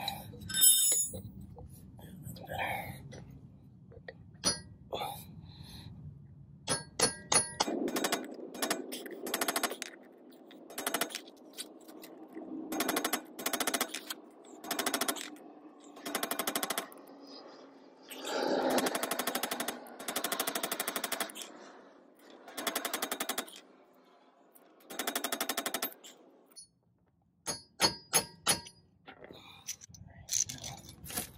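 Steel hammer blows on a bearing race driver, seating a freezer-chilled bearing race into an oven-heated wheel hub. A few light taps come first; after several seconds the blows come in quick ringing runs, metal on metal. A few sharp taps come near the end.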